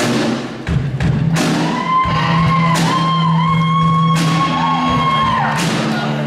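Live rock jam: an electric guitar through a small amp holds long lead notes that waver and bend in pitch over a low sustained chord, with a drum kit crashing cymbals about every second and a half.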